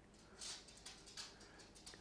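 Near silence, with a few faint soft clicks and rustles from metal knitting needles and yarn as stitches are slipped from one needle to the other.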